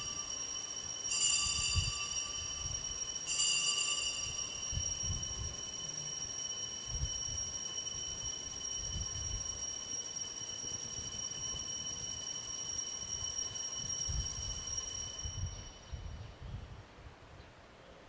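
Altar bells struck twice, about one and three seconds in, several high tones ringing together and slowly dying away by about fifteen seconds. They mark the elevation of the consecrated host.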